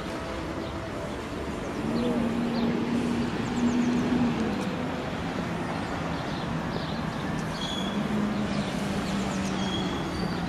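City street and park ambience: steady traffic noise with a low engine drone that swells about two seconds in. Small birds chirp and passers-by talk.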